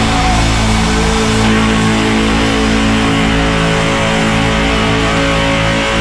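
A live rock band playing loudly, with electric guitars holding long sustained chords over drums and no singing.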